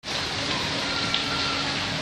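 Steady background hiss with a faint low hum underneath, even throughout with no distinct events.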